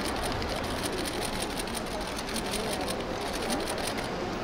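Busy airport terminal hall: a crowd murmuring, with rapid, irregular clicking running through it.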